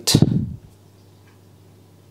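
A man's voice ending a word in the first half-second, then quiet room tone with a faint steady low hum.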